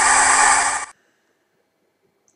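A burst of TV static: a loud, even hiss that cuts off abruptly just under a second in.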